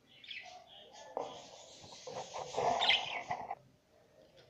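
Budgerigar calling in its wire cage, a run of harsh chirps and squawks over about three seconds, loudest near the end, then stopping abruptly.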